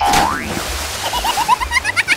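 Cartoon sound effects: a sudden splash-like rush of noise as a toy figure tips into the pool, then a quick run of short rising boing chirps that climb higher near the end.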